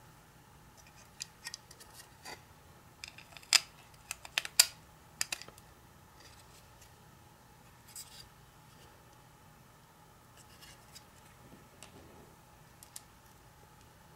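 Small sharp clicks and ticks of tiny mounting screws and nuts being fitted by hand through an Arduino Uno circuit board and a thin wooden base plate. The clicks come in an irregular cluster over the first six seconds or so, then thin out to a few faint ticks.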